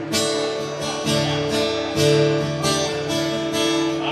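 Acoustic guitar strummed in a steady rhythm, about three strokes a second, the chords ringing on, with no voice over it.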